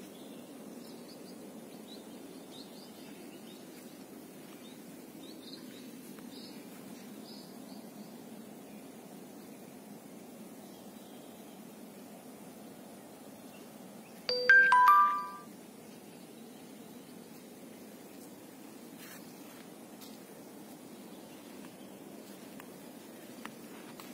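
A short chime of a few steady notes stepping down in pitch, lasting about a second, about two-thirds of the way through. It sits over a steady outdoor background hiss, with faint bird chirps in the first several seconds.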